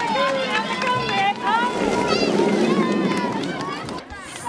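Crowd of schoolchildren shouting and cheering, with some clapping, as racers pass along the course. The many high voices overlap and swell into a dense crowd noise about halfway through.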